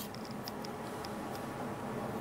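Faint, irregular light ticks of a steel digital caliper's jaws being set against a cast-iron exhaust manifold's turbo outlet flange, a few small clicks a second.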